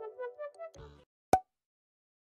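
Last notes of background music fading out, then a single short, sharp pop sound effect a little over a second in.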